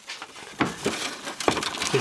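Handling noise: a few light knocks and rustles as power cords and the plastic back casing of a Toshiba SM 200 music centre are moved about close to the microphone.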